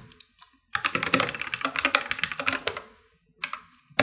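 Typing on a computer keyboard: a quick run of keystrokes starting about a second in and lasting about two seconds, then a few more keys near the end.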